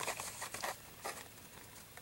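Faint crinkling and rustling of a toy car's plastic-and-card blister pack being handled: a few soft crackles in the first second that fade out.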